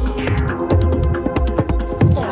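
Live electronic music set played from a mixer and laptop: a repeating deep bass pulse under sharp clicking percussion and sustained synth tones, with a downward sweep in the highs near the end.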